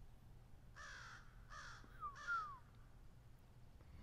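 A bird calling three times in quick succession, the last call sliding down in pitch.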